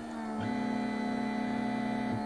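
Stepper motors of a 3D printer converted into a pick-and-place machine, whining at a steady pitch as the placement head moves, with a brief pitch shift about half a second in.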